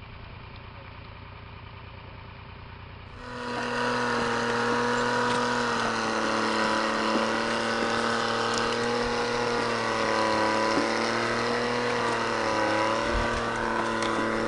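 A motor vehicle's engine running steadily, its pitch wavering slightly. It starts abruptly about three seconds in, after a stretch of faint background noise.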